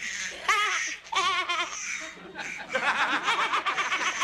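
A woman laughing heartily in several bursts, the last one long and loud.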